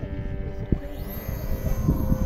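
Electric motor and propeller of a radio-controlled motor glider whining as it flies close by, with a high-pitched whine rising and then holding from about a second in. Gusts of wind rumble on the microphone.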